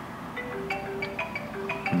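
iPhone ringtone for an incoming call: a marimba-like melody of short, separate notes starting about a third of a second in.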